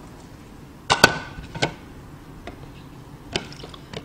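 A few sharp knocks and clinks of kitchen bowls and a mesh strainer being handled and set down on a counter while draining cut vegetables: a cluster about a second in, the loudest, another shortly after, and one more near the end.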